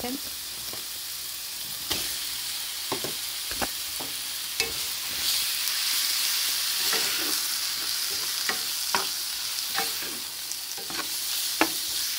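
Raw chicken pieces frying in hot olive oil with chopped onion, garlic and ginger, a steady sizzle that grows louder about five seconds in as the chicken goes into the pan. Scattered knocks come as the food is stirred in the pan.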